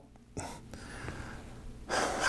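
A man breathing in audibly: a soft, breathy rush lasting about a second and a half.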